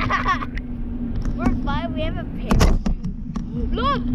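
Wind buffeting the microphone high up on a parasail, with a loud crackling gust about two and a half seconds in, under a steady low hum. Short high vocal exclamations come and go several times.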